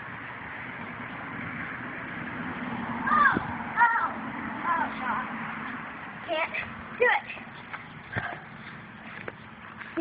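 A person's voice making several short, high, gliding calls without words, over a steady outdoor background noise.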